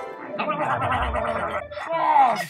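A man's rapid, rattling gargle-like vocal noise, lasting about a second and a half, over music.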